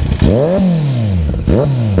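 Kawasaki Z900 inline-four engine revved twice through a de-catted aftermarket slip-on exhaust. Each blip climbs quickly for about a third of a second, then falls back more slowly toward idle; the second blip starts about a second and a half in.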